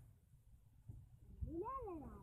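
A cat meowing once, a single call that rises and then falls in pitch about one and a half seconds in.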